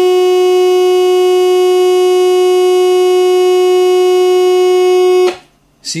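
The AM modulation tone of a valve RF signal generator, demodulated and played by a radio tester: one steady loud tone with many overtones. It cuts off suddenly about five seconds in, as the generator is switched away from the tone.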